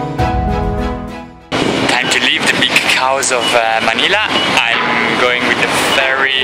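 Background music fading down, then a sudden cut to a loud, noisy outdoor din with voices in it.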